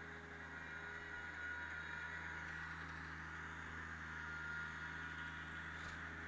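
Rural King RK24 compact tractor's diesel engine running steadily under light load, a low steady hum that grows a little louder in the middle.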